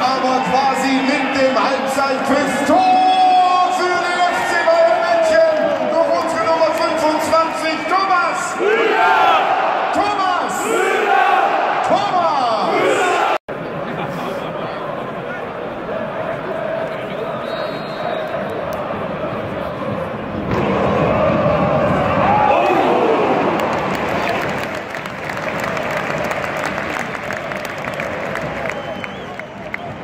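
Large football stadium crowd singing and chanting together, many voices holding sustained notes. The sound cuts off abruptly about thirteen seconds in and gives way to a quieter crowd noise, which swells louder for a few seconds around twenty seconds in.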